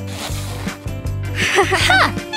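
Background music with a steady low beat, overlaid by two short rasping sounds: one at the start and one with brief squeaky glides about three-quarters of the way through.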